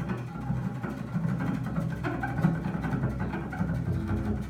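Double bass played with the bow in a free-jazz solo improvisation: dense low notes with a scratchy, rasping bow noise over them.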